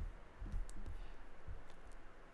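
Computer mouse being clicked and moved on a desk: a few soft low knocks and a couple of sharper clicks.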